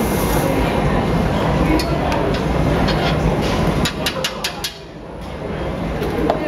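Steady low rushing noise from the gas-fired glass furnace, with a quick run of sharp metal clicks about four seconds in from glassblowing tools against the blowpipe.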